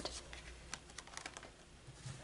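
Faint, light clicks and taps of tarot cards being handled and set down on a table.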